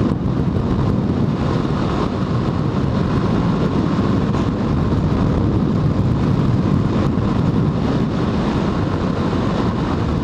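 Steady rush of wind over the microphone on a Yamaha Factor 150 motorcycle riding fast, with the bike's single-cylinder engine running underneath.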